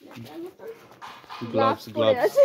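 People talking, with a louder spoken word near the end; no other distinct sound stands out.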